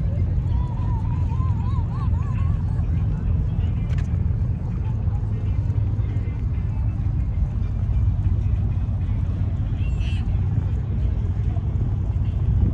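Steady low rumble with faint voices of passersby.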